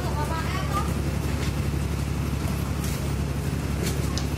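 A bus's diesel engine idling steadily, with a few short clicks along the way.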